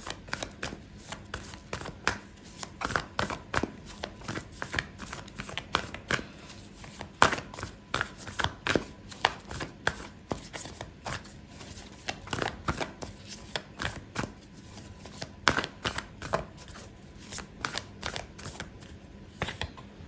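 A deck of oracle cards being shuffled by hand: a long run of irregular quick clicks and snaps as the cards slide and slap together.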